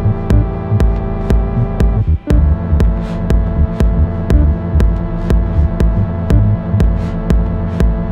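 Minimal techno track: sharp clicks about twice a second over deep bass pulses and held electronic tones. The track drops out briefly about two seconds in, then comes back.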